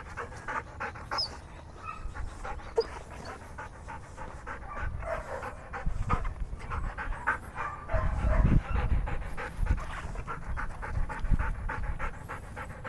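Belgian Malinois panting rapidly, about four breaths a second. A brief low rumble comes about two-thirds of the way through.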